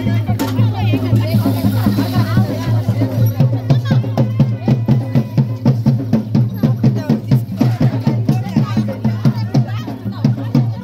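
Drums beating a quick, steady rhythm, with a crowd's voices over them and a steady low hum underneath.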